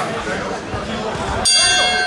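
A boxing-ring bell struck once about one and a half seconds in, ringing on with a clear metallic ring; it typically signals the end of a round. Before it there is crowd hubbub and voices.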